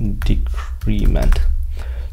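Computer keyboard being typed on in a quick run of keystrokes as a word is entered, with a man's voice speaking briefly over it.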